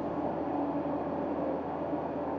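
Shelbourne Powermix Pro-Express 22 diet feeder running, its twin vertical mixing augers turning: a steady mechanical drone with a low hum.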